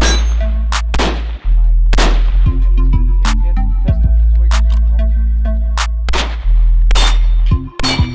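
A string of gunshots at uneven spacing, about ten in all, fired first from a carbine and then from a pistol at steel targets, several hits leaving the steel ringing. Background music with a heavy bass line runs under the shots.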